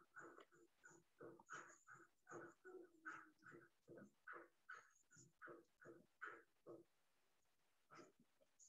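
Faint dog barking in a rapid run of short barks, about three or four a second, stopping about seven seconds in.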